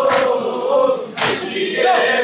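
A group of men chanting a noha together in a lamenting chorus, punctuated by loud unison chest-beating strikes (matam) about a second apart, two of them here.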